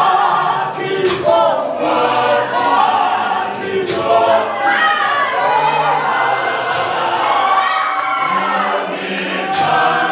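A large women's gospel choir singing a Zulu hymn in full harmony without instruments, with a man's voice leading in front.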